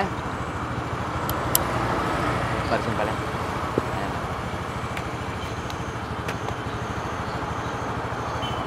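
Motor scooter engine idling steadily, with road traffic passing.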